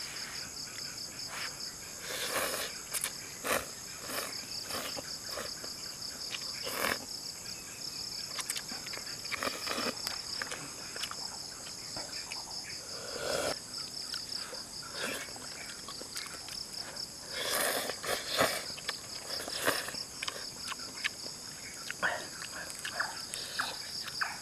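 Noodle eating close to the microphone: irregular slurps and mouth noises, with a longer slurp of broth from a pot around the middle, over a steady high trilling of insects.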